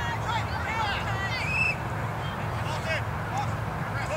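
Spectators and young rugby players shouting and calling out at once, with several voices overlapping and some high-pitched cries among them.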